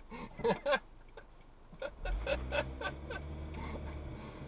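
A car's engine pulling away from a stop about two seconds in, its low rumble building as it accelerates, with a turn signal ticking.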